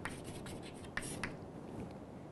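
Chalk writing on a chalkboard: a run of faint, short scratches and taps as symbols are written, one slightly sharper stroke about a second in.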